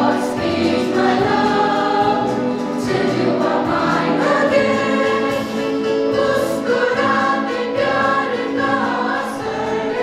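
A mixed school choir of boys and girls singing together, with long held notes that change every second or two.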